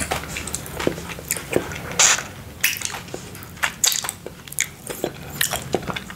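Close-miked chewing of mochi ice cream: a run of short, irregular mouth clicks, with a few louder ones about two seconds in and near four seconds.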